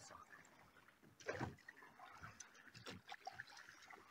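Faint sounds of a small boat on calm water: a brief soft noise about a second and a half in and a few light knocks later, otherwise near silence.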